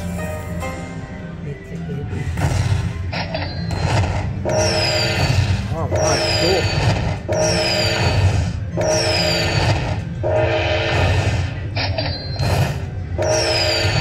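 Aristocrat Dragon Cash 'Autumn Moon' slot machine counting up the fireball values after its free-spins bonus. A chime of several held tones with a high falling chirp repeats a little faster than once a second as each value is added to the win, with a short break near the end. A steady low casino hum runs underneath.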